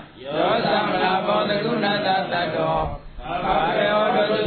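Buddhist monk chanting a recitation in a sustained, sing-song voice, with short breaks for breath near the start and about three seconds in.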